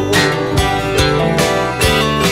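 Multi-tracked rock band arrangement: strummed acoustic guitar over bass and keyboards, with an even beat of about two strokes a second.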